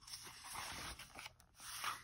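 A paper page of a picture book being turned by hand: a faint papery rustle for about the first second, then a shorter rustle near the end as the page settles.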